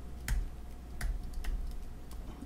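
Single keystrokes on a computer keyboard, a few separate key clicks, the clearest about a third of a second in and at one second, as tool hotkeys are pressed.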